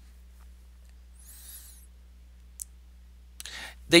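A steady low electrical hum with one sharp click about two and a half seconds in; a faint high-pitched warble shortly before it, and a breath and speech near the end.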